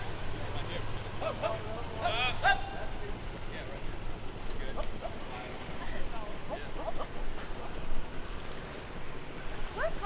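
Scattered distant voices of several people calling out and talking, over steady outdoor wind and water noise. A low engine hum sits underneath for the first few seconds, then fades.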